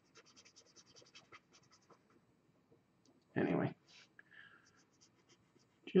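Pen scratching on paper in quick, faint short strokes as black ink is filled into a drawing. A brief murmured voice sound comes about three and a half seconds in.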